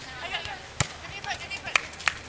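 Sharp slaps of hands striking a volleyball, twice about a second apart, with distant voices between.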